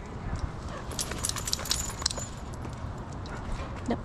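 A leashed dog moving about on asphalt: a quick run of light clicks and taps about a second in, lasting about a second, with a brief thin high ringing among them, over a steady low rumble.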